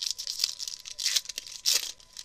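Foil wrapper of a 2013 Bowman Draft Picks and Prospects baseball card pack torn open by hand, crinkling: several quick rips, the loudest one near the end.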